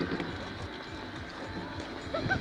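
Faint background voices over a low, steady outdoor hum, with no clear single event.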